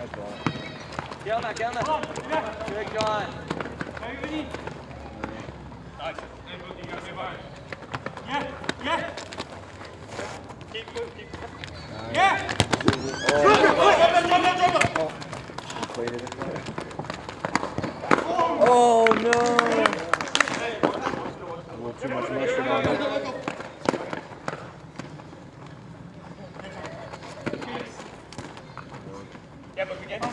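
Players shouting and calling to each other during an arena soccer game, loudest about halfway through and again a few seconds later, with scattered knocks of the ball being kicked.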